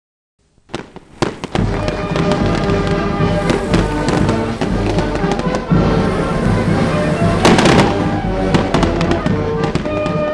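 Fireworks going off in a rapid run of bangs and crackles, thickest about three-quarters of the way through, over music playing throughout.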